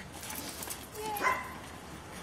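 A dog gives a single short, sharp bark about a second in.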